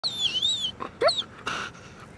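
German Shepherd whining: one long high, wavering whine, then a shorter whine about a second in, followed by a brief breathy puff.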